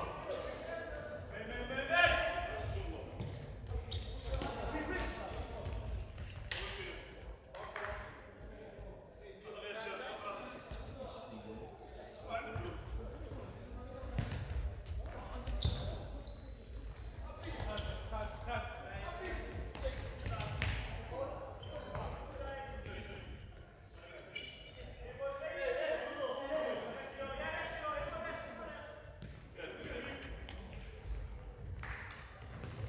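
Futsal ball being kicked and bouncing on a hard indoor court, sharp knocks scattered through the play and ringing in the hall, with players calling out to each other.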